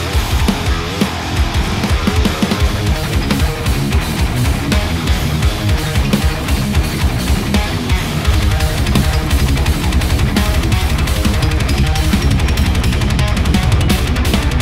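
Heavy metal riffing on an extended-range electric guitar. About eight seconds in, the low end settles into a fast, steady pulse.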